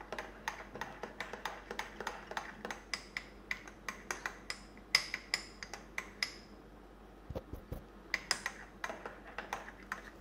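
Metal spoon stirring a drink in a ceramic mug, clinking against the inside about three to four times a second, with a short pause past the middle before it starts again.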